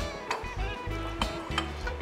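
Background music, with a red spatula stirring rice in a stainless steel pot: a few short scrapes and knocks against the pot.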